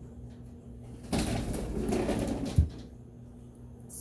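Rough rustling and rubbing of a cloth towel being handled for about a second and a half, ending in one dull thump as the pistol slide is set down on the towel.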